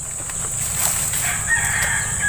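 A rooster crowing: one long, level crow note that begins about one and a half seconds in. It sounds over a steady high-pitched insect drone.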